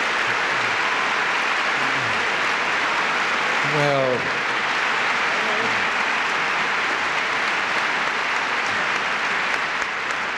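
Large hall audience applauding steadily throughout, with a brief voice calling out about four seconds in.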